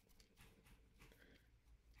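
Near silence: room tone with only very faint soft handling noise.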